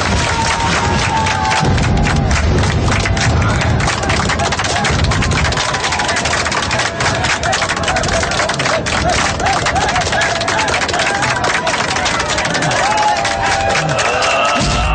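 Crowd of spectators shouting and cheering with dense, rapid hand-clapping.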